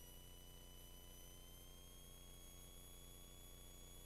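Near silence, with only a few faint steady high tones.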